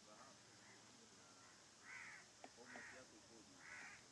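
A bird calls three times, faint, short harsh calls about a second apart in the second half, with a single sharp click between the first two.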